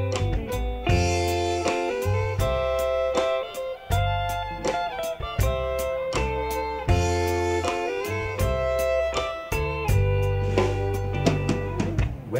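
Live Americana band playing an instrumental break: electric guitar and fiddle over bass guitar and a drum kit keeping a steady beat.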